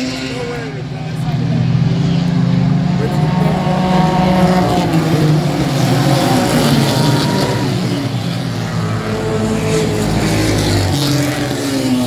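A pack of stock cars racing past on an oval track, several engines running hard at once. The sound swells as the field goes by, loudest from about two to seven seconds in, and eases a little afterward.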